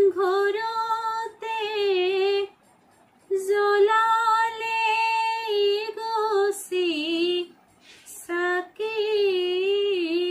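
A woman singing an Assamese dihanaam, a devotional naam, solo with no instruments, holding long ornamented notes that waver in pitch. She breaks off twice briefly, about two and a half and seven and a half seconds in.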